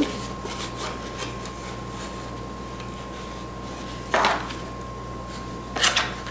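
Card stock and small craft supplies handled on a tabletop, with faint ticks and two short scraping knocks about four seconds in and near the end, over a faint steady hum.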